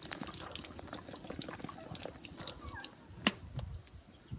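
Water pouring from a plastic water bottle into a mouth and splashing and dribbling over the face, a rapid patter of drips and splashes. One sharp click comes a little past three seconds in, and then it goes quieter as the bottle runs empty.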